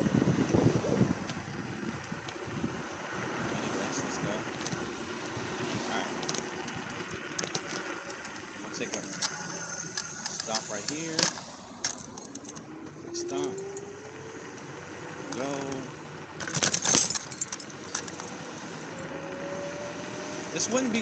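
Wind and road noise from riding an electric scooter, with scattered bumps and knocks. Over the last several seconds a thin whine slowly rises in pitch.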